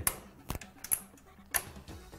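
Plastic push-pin fasteners of a stock Intel CPU cooler being pressed down into the motherboard, giving a handful of sharp plastic clicks as they snap into place, the loudest about halfway through.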